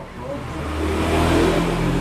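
A motor vehicle's engine running, growing louder over about the first second and then holding steady.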